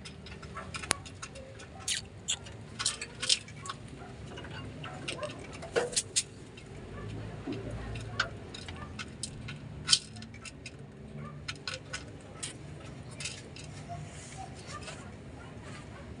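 Pigeons pecking grain and dried peas from a clay bowl: irregular sharp clicks of beaks striking the seeds and the bowl, sometimes in quick clusters.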